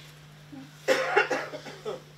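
A person coughing, a few sharp coughs in quick succession about a second in, the last one weaker, over a steady low electrical hum.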